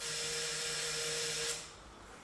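Vintage fire engine's electric starter motor whirring steadily, starting suddenly and cutting off after about a second and a half; the engine does not catch.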